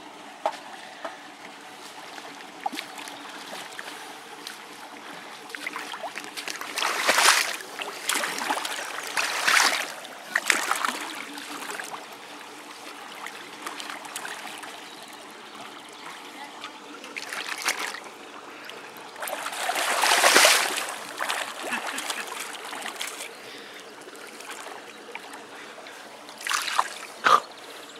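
Large wels catfish thrashing in shallow muddy water, with several sudden splashes, the loudest about twenty seconds in, over a steady trickle of water.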